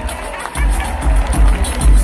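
A live rock band playing on stage, recorded from the crowd, with a heavy, booming bass beat.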